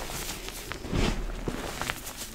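Bare hands squeezing and crushing a mass of powdery pink gym chalk, fresh and reformed pieces together: soft, dusty crunches with a few fine crackles, the loudest squeeze about halfway through.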